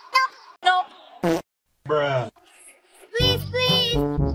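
Brief snatches of a woman's voice and a short comic sound effect with a falling pitch, then background music with a beat comes in about three seconds in.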